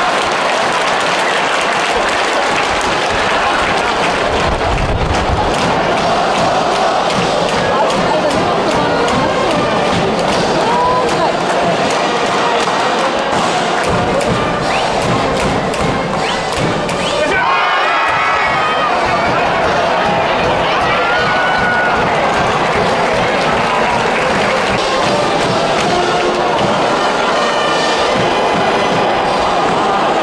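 Baseball stadium crowd with a school cheering section's band playing and chanting over steady drum beats. The music breaks off briefly a little past halfway, then starts again.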